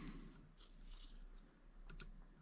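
An old pair of scissors being worked on a fine metal necklace chain: faint rustling, then one sharp click near the end.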